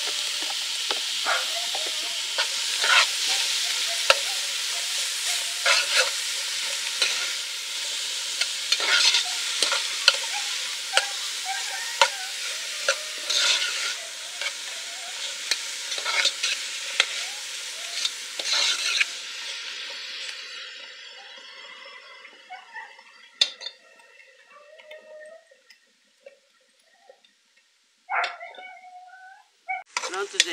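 Chopped onion and grated garlic sizzling as they sauté in vegetable oil in an aluminium pot, with a metal spoon clicking and scraping against the pan as it stirs. The sizzle fades away about two-thirds of the way through, leaving only faint, scattered sounds.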